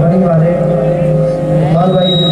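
Qawwali music: a harmonium's steady held notes with a male voice singing over them.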